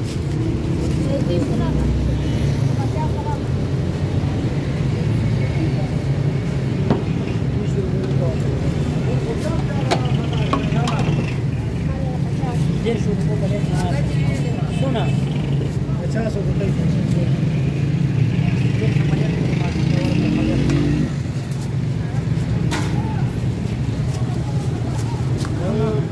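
Steady roadside traffic noise, with motor vehicles running by and people talking in the background.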